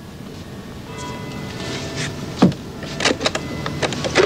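Plastic desk telephone handset being picked up: a knock a little over two seconds in, then a quick cluster of clicks about three seconds in, over a soft sustained music underscore.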